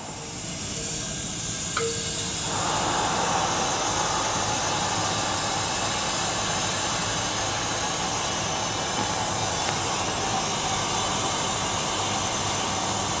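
Steady hiss of water rushing through an open valve and the pipework of a booster set. The first of its Grundfos CR3-10 vertical multistage pumps has just switched on on demand and runs at low speed, and the rush builds over the first two to three seconds, then holds steady.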